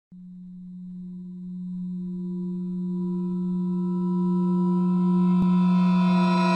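Intro drone sound effect: one sustained low tone with overtones, growing steadily louder.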